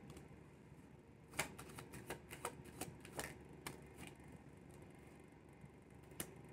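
A deck of tarot cards being shuffled by hand: a run of faint, irregular clicks of card against card, starting about a second and a half in and dying away before the fifth second.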